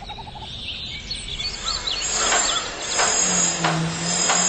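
Bird calls chirping over a swelling wash of noise, as the opening sound of a documentary excerpt. Later come a few sharp knocks, and a low steady hum comes in near the end.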